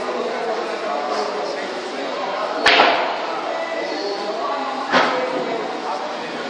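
Pool cue striking the cue ball with a sharp click about halfway through, followed about two seconds later by a softer knock of a ball striking a ball or rail on the table. Voices murmur in the background of a large room.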